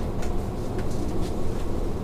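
Steady low rumble of background noise, with a few faint clicks from a metal door lock being worked by hand.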